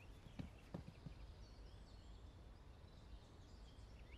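Near silence: a few footsteps fade away in the first second, then faint bird chirps.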